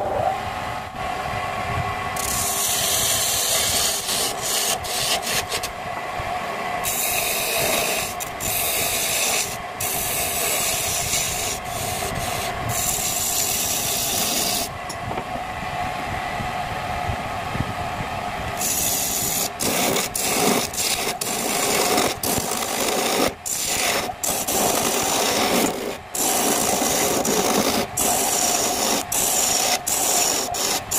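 Wood lathe running steadily while a hand-held turning chisel cuts a spinning mahogany blank: a hissing scrape in long passes, broken by short pauses with only the lathe's hum.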